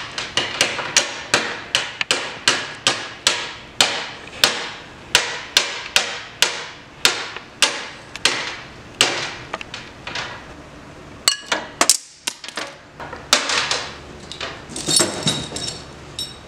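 A long run of sharp, evenly spaced knocks like hammer blows, about three a second, which thins out and stops roughly ten seconds in; a few irregular knocks and a ringing metallic rattle follow near the end.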